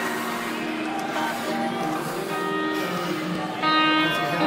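Music with guitar playing held notes; a louder chord comes in near the end.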